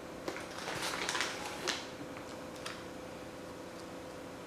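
Faint rustling and crinkling of plastic coral bags and packaging being handled, with a cluster of light crackles in the first two seconds over a faint steady hum.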